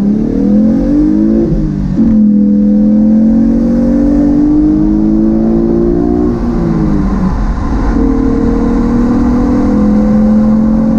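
A 2014 Camaro RS's 3.6-litre V6 accelerating hard at full throttle, heard inside the cabin. Its pitch climbs and drops sharply as the automatic gearbox upshifts about two seconds in and again around six to seven seconds in, then climbs slowly again.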